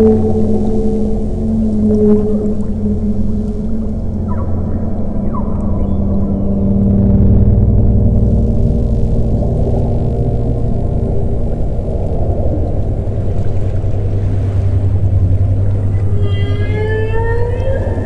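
Ambient drone music with steady low tones and whale calls layered over it; a rising whale call with several overtones sweeps up near the end.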